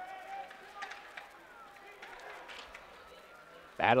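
Faint ice hockey arena sound: skates and sticks on the ice with a low murmur of voices, and a few sharp clicks of sticks or puck. A commentator's voice cuts in just before the end.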